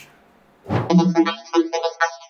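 Electronic background music coming in about two-thirds of a second in, a synth line over a beat, its low end falling away in a rising sweep.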